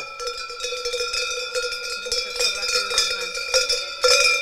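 Large cowbell-type metal bells worn by a costumed mummer, clanging and ringing continuously with repeated strikes as the wearer moves.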